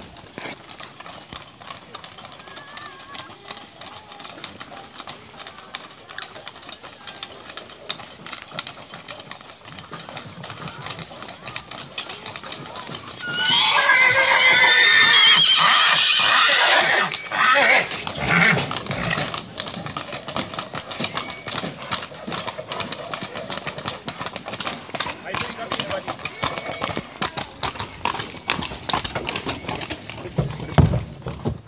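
Horse hooves clip-clopping on a concrete road, and about thirteen seconds in a stallion gives a loud, quavering whinny lasting some three seconds.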